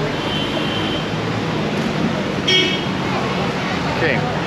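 Steady city street traffic noise, with a short vehicle horn toot about two and a half seconds in.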